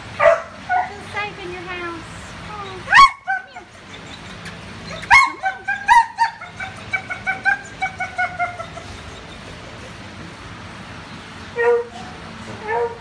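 Dogs whining and yelping in short pitched calls that bend in pitch, with two loud calls about a quarter and halfway through, then a quick run of falling whines.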